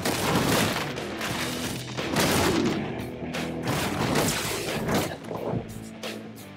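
Soundtrack of a TV action scene: music with a dense run of sudden hits and crashes, easing off near the end.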